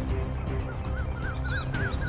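A bird calling in a quick series of short, repeated rising-and-falling notes, about four a second, starting about two-thirds of a second in. A faint steady music bed runs underneath.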